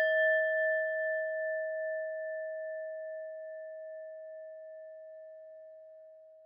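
A single struck bell-like chime ringing on and slowly fading, one clear mid-pitched tone with fainter higher overtones and a gentle pulsing as it dies away.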